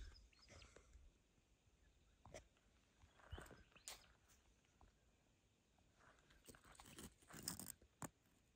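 Near silence, broken by a few faint, brief scrapes and knocks. A longer faint cluster near the end comes as a loose rock is lifted off another rock on gravel.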